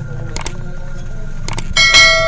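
Subscribe-button animation sound effect: two mouse clicks about a second apart, then a bright bell ding near the end that rings on. A steady low hum lies underneath.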